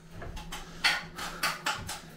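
A few short scrapes of a pointing trowel working mortar into a stone wall joint, over a low steady hum.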